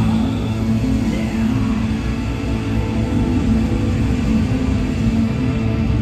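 Live rock band playing loudly, with distorted electric guitars and bass through a stage PA, recorded from within the crowd.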